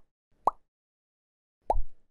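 Two short cartoon 'plop' pop sound effects about a second apart, each a quick upward-bending blip; the second has a low thump under it. These are the pops of an animated intro's graphics appearing, with silence between them.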